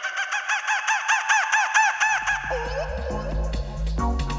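Opening of a dub reggae track: an electronic siren-like effect warbling rapidly up and down in pitch, about seven sweeps a second. About halfway through, a deep bass line and drums come in under it.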